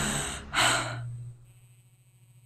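The backing music's last note dies away, then a short breathy gasp comes about half a second in and fades to near silence.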